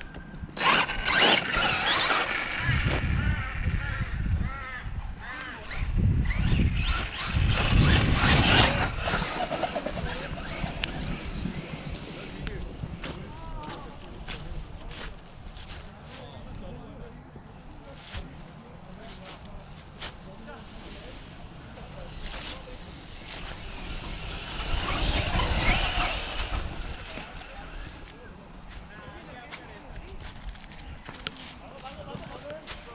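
Electric RC short course truck with a Max 8 brushless ESC and motor combo, driven in bursts: three loud runs of motor whine wavering in pitch with the throttle, over rumble from the tyres and chassis, with scattered ticks and knocks in between.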